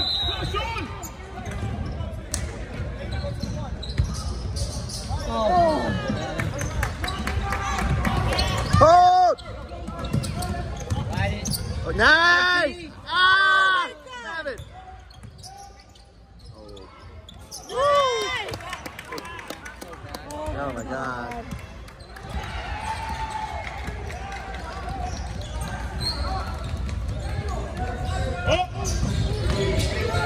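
A basketball being dribbled and bouncing on a hardwood gym floor during play, with sneakers squeaking on the court: a few loud squeaks come in a cluster around the middle and one more a few seconds later.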